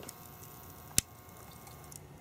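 Panasonic microwave-oven inverter board running off a signal generator's 230 Hz drive, its transformer coil giving a faint, steady whine of several high tones. A single sharp click about a second in.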